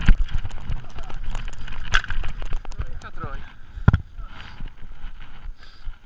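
Mountain bike clattering down a rocky trail: a dense run of knocks and rattles as the tyres and frame hit loose stones, over a low rumble, with hard jolts at the start and a little before four seconds.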